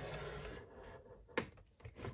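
Scoring stylus drawn down the groove of a scoreboard, creasing a sheet of paper: a faint scratchy rub that fades within the first second, then a single light tap.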